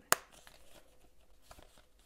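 A small ring-bound organizer being handled: one sharp click at the very start, then faint rustling and handling noise.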